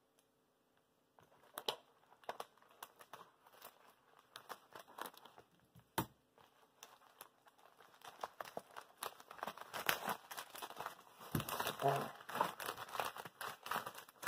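Plastic poly mailer bag being handled and torn open, crinkling. The rustling is sparse at first, with one sharp click about six seconds in, and grows denser and louder over the last several seconds.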